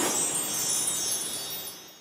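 A sparkly chime sound effect with a shimmer of many high bell-like tones, loudest at the start and fading away over about two seconds.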